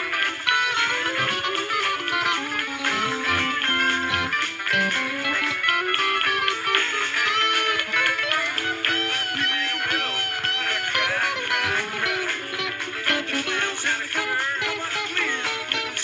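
Guitar music with strummed chords under a picked lead line whose notes bend up and down in pitch, with no singing.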